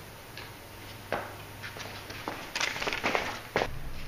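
Scattered light clicks and knocks of people moving about a room on a hard floor, starting about a second in and busier in the second half.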